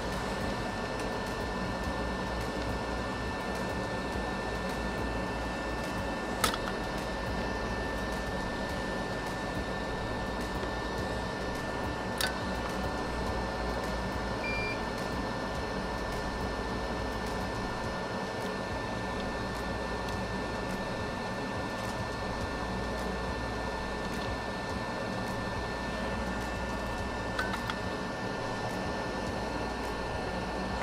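Steady electric fan hum carrying a few faint steady tones, with an occasional faint click and one very short beep about halfway through.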